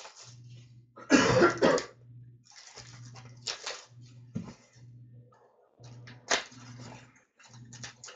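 Hands handling and opening cardboard hockey card boxes and their packs: scattered rustles and clicks, with one loud rough burst about a second in.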